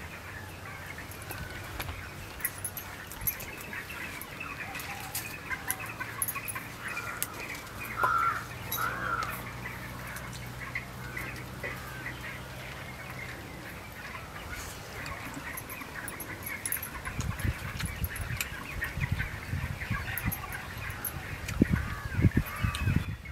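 Birds chirping and chickens clucking, with two louder calls about eight seconds in. In the last few seconds, low thuds of a stone pestle working in a stone mortar.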